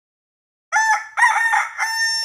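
A rooster crowing once, starting about two-thirds of a second in: two short notes, then a long held note.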